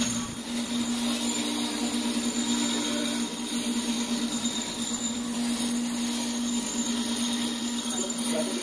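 Bench grinder running steadily with a bolt's dirty threads held against its wire-brush wheel, a constant motor hum under an even hiss.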